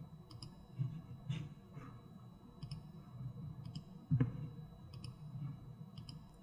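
Computer mouse clicks, a few quick press-and-release pairs spaced about a second apart, with soft low thuds among them and a stronger dull thump about four seconds in.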